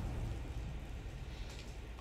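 Low, steady rumble of a TV drama's ambient soundtrack, slowly fading.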